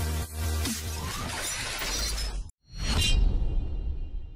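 Electronic logo-sting music with a heavy beat, building with a rising sweep, then cutting out abruptly about two and a half seconds in. A loud shattering crash follows and rings on, fading away.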